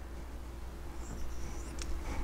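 A pause between spoken sentences: room tone with a steady low hum, a faint high sound about a second in, and one short click near the end.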